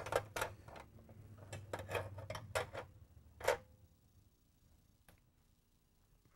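Hand tools and metal engine parts clinking as they are handled: a quick, irregular series of sharp clicks over the first three and a half seconds, the loudest near the end of the run, then one faint click.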